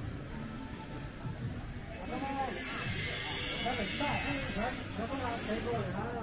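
Voices nearby over a steady low background, growing louder about two seconds in.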